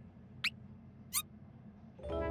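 Two short, high squeaks from a cartoon soundtrack: one sweeping up about half a second in, one sweeping down a little after a second in.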